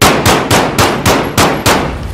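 Sound-effect gunfire: a rapid even series of about seven loud shots, three or four a second, that cuts off suddenly.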